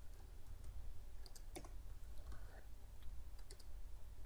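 Scattered clicks of a computer keyboard being typed on, a few keys at a time, over a low steady hum.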